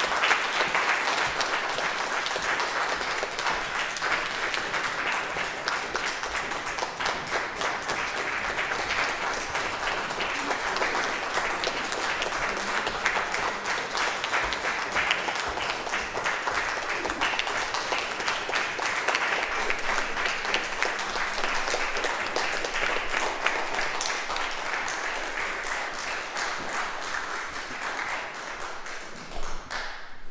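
Audience applauding: many hands clapping steadily, easing off slightly near the end.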